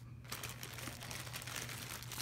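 Clear plastic packaging crinkling as it is handled by hand, a dense run of small crackles starting about a third of a second in, over a low steady hum.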